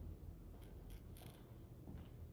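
Near silence: faint room hum with a few soft clicks around the middle.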